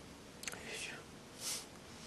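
A pause in a man's speech: a faint mouth click about half a second in, then two soft breaths.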